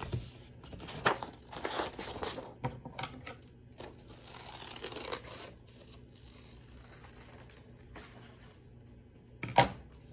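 Scissors cutting through paper, with the sheet rustling as it is handled: a run of short crisp snips and rustles, busiest in the first half, with a sharp click about a second in and another near the end.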